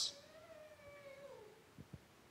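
A young child's faint, drawn-out cry, falling in pitch over about a second and a half, then two soft knocks near the end.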